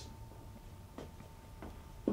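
Quiet room tone with a faint steady high hum and three faint light ticks, the first about a second in.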